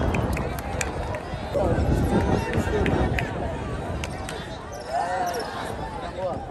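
Crowd of football spectators shouting and talking, with a few sharp knocks.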